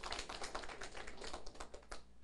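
Light applause from a seated audience: a rapid, irregular patter of claps that thins out near the end.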